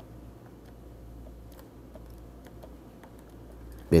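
Faint, scattered light clicks and taps of a stylus on a graphics tablet as a word is hand-written, over a low steady hum.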